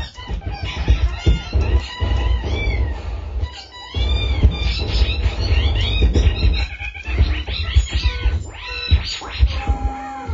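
Live improvised electronic music from laptops and controllers: dense low bass thumps under short, high tones that arch up and down in pitch, breaking off briefly a little before the halfway point.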